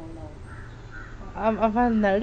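A crow cawing: a quick series of short caws starting about one and a half seconds in.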